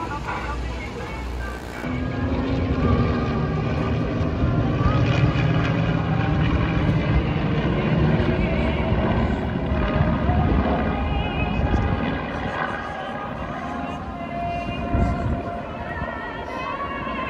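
Formation of aircraft flying overhead: a loud low engine rumble starts about two seconds in, holds, and fades after about ten seconds, with voices over it.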